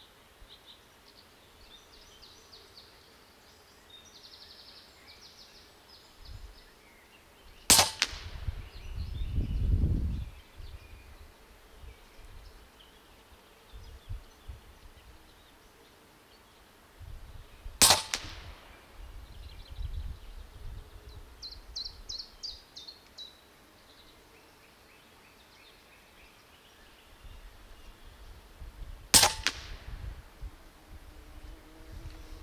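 Regulated .25 caliber Huben K1 semi-automatic PCP air rifle firing slugs: three sharp shots about ten seconds apart. A low rumble swells and fades for a couple of seconds after the first shot.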